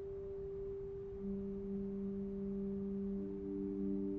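Grace Cathedral's Aeolian-Skinner pipe organ playing a quiet, slow passage of sustained notes with almost pure tones: one note held throughout, a lower note joining about a second in and a third entering near the end to build a chord.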